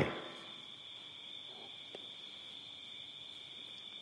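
Faint, steady high-pitched drone of night insects such as crickets: one unbroken tone.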